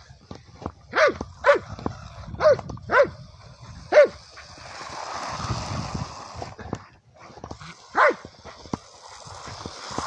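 German shepherd barking six times, short sharp barks that drop in pitch, five in quick succession in the first four seconds and one more about eight seconds in. Between them a steady rushing noise rises and falls in the second half.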